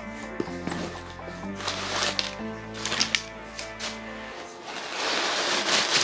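Background music with steady held notes, over the rustle and clicks of bags and fabric being handled. The rustling grows louder and denser near the end.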